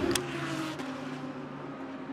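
GT3 race car engine running on track, a steady note that sags slightly in pitch and then holds, with one short click just after the start.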